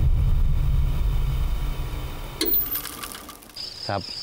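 A transition sound effect: a low, rumbling mechanical-sounding noise that fades away over the second half, with a sharp click about two and a half seconds in. A steady insect chirp comes in near the end.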